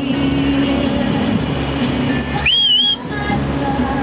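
A person's loud whistle, one short call that rises, dips and rises again, about two and a half seconds in, whistled to get distant people to wave back. Music plays steadily underneath.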